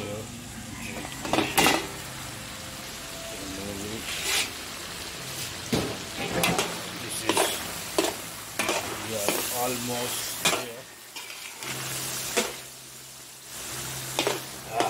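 Metal spatula scraping and knocking against a karahi in irregular strokes about once a second as chicken and tomatoes are stirred, over a steady sizzle of frying. A steel bowl used as a lid clatters as it is levered off near the start.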